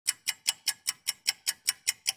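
Stopwatch ticking sound effect: a steady run of sharp ticks, about five a second.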